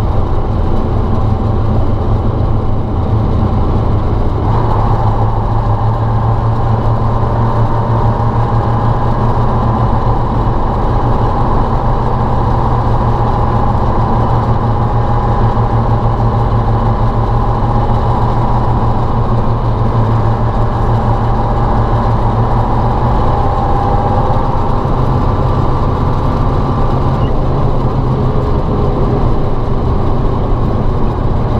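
Ural logging truck's YaMZ-238 V8 diesel running steadily as the truck drives along, its note changing about four seconds in.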